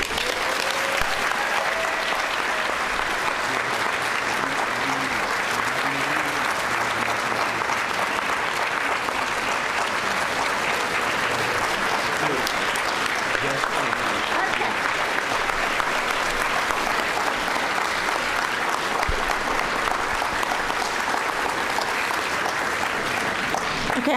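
A large audience applauding steadily and at length, with voices faintly under the clapping.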